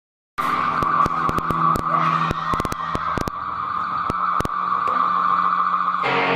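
Electric guitar amplifier feedback, a steady squeal that starts suddenly after a brief silence, crossed by scattered sharp crackling pops in the first few seconds.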